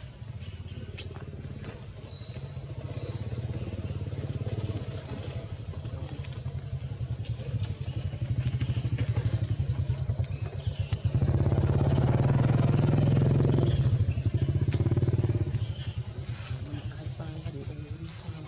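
An engine running off-camera with a low, rapid pulse, growing louder through the middle and loudest for a few seconds before easing off. Short high chirps come and go over it.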